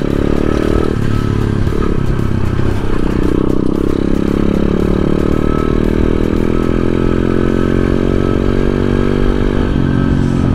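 A 125cc dirt bike's single-cylinder engine running at road speed while being ridden. Its note holds fairly steady, with small rises and falls in pitch.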